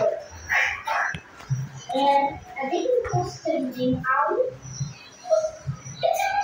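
A young child's voice singing and vocalising in short phrases, with a pop song from a music video playing faintly underneath.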